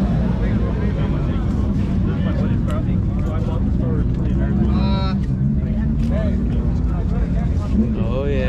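A steady low rumble of idling car engines under the chatter of a crowd of people, with one raised voice about five seconds in.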